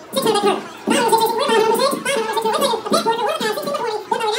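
Auctioneer's rapid bid-calling chant over a PA system: a fast, unbroken rolling stream of words.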